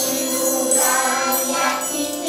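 A group of young children singing a song together, with jingling small hand percussion such as a tambourine.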